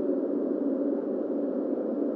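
Steady, low droning rumble of a dark ambient soundscape, even and unbroken, with a faint hum under it and no distinct creaks or knocks.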